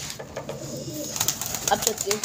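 A flock of white domestic pigeons cooing, with a few short sharp clicks about a second in.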